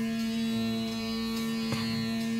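Rudra veena playing Raga Malkauns: one note held steadily over a drone, with a single sharp pluck near the end.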